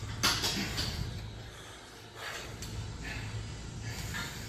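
A man's short, sharp breaths while curling dumbbells, a few puffs near the start and again past the middle, over a steady low hum.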